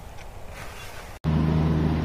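Faint background for the first second, then, after a sudden cut, a steady low engine hum from a rail maintenance vehicle.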